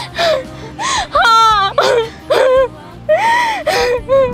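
A woman crying and wailing in distress, in several drawn-out cries that rise and fall, over background music.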